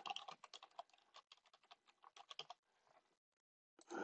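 Faint computer keyboard typing: a quick run of keystrokes in the first second, then a few more a little past two seconds in.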